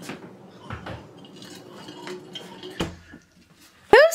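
A few sharp clinks and knocks from a door and a drink tumbler being handled, over a faint steady room hum. There is a loud knock right at the end.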